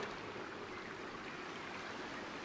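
Steady, faint hiss of outdoor background ambience, with no distinct events.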